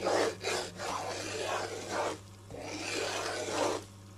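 Wooden spatula scraping and stirring semolina as it roasts in ghee in a kadhai, in repeated rasping strokes with a short lull about two seconds in.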